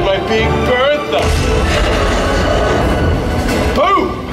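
Amplified stunt-show soundtrack: dramatic music with shouted voices in the first second. A dense rushing noise comes in about a second in, and a voice-like cry rises and falls near the end.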